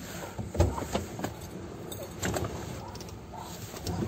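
Handling noise from a camera being moved about: rubbing and a few scattered knocks, the strongest a low thump about half a second in, over a steady low rumble.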